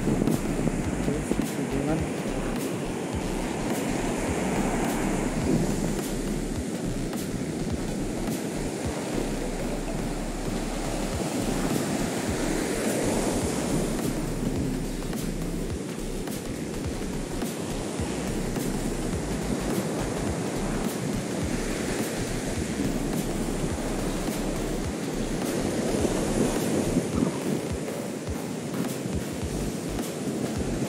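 Heavy ocean surf breaking and washing up a sandy beach, swelling and easing every several seconds, with wind buffeting the microphone.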